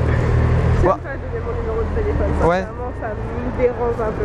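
City street traffic: a passing motor vehicle's low rumble, loudest in the first two and a half seconds and then easing off, under a woman's quiet speech.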